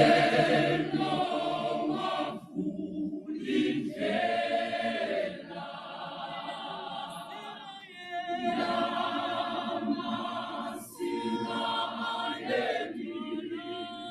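Large mixed gospel choir singing a cappella, with a male lead singer leading the choir. The singing comes in phrases of a few seconds with brief breaks between them.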